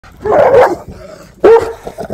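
Caucasian Shepherd Dog (Ovcharka) barking twice, two loud barks about a second apart.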